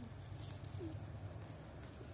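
Newborn puppies giving two brief, faint whimpers, one at the start and one just under a second in, over a low steady background hum.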